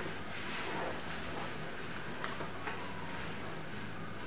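Steady low hum and hiss of room tone, with two faint short ticks a little over two seconds in.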